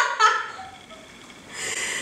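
Women laughing: a high voice trailing off in the first half second, then quiet breathy laughter near the end.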